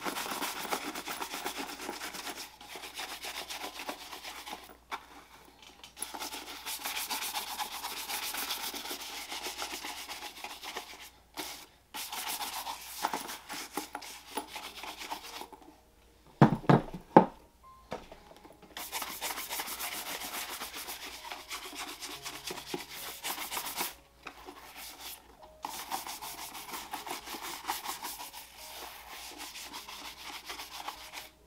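Bristle shoe brush rubbed in quick back-and-forth strokes over the leather of a freshly conditioned dress shoe, in several bouts with short pauses between. A few loud knocks come about halfway through.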